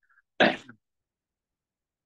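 A woman clearing her throat once, a short sharp burst about half a second in, followed by silence.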